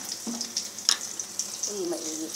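Chopped onion and garlic sizzling in hot oil in a wok, a steady high hiss, with one sharp click a little before halfway.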